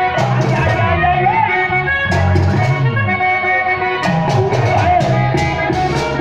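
Live vallenato music through loudspeakers: an accordion melody over a repeating bass line and steady percussion.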